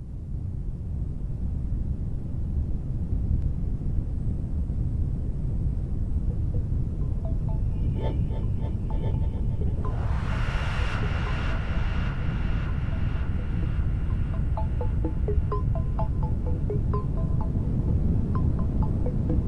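Ambient music played on a Sequential Prophet Rev2 analog synthesizer: a deep drone swells in, joined by sparse short high notes from about seven seconds in and a brighter sustained tone that enters about ten seconds in.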